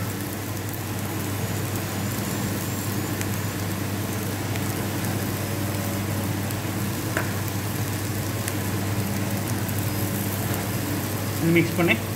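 Chopped flat beans (avarakkai) sizzling steadily in hot oil in a kadai, over a steady low hum.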